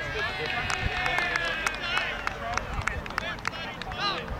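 Indistinct distant shouts and calls of players across an outdoor football pitch, with scattered sharp clicks and a steady low rumble underneath.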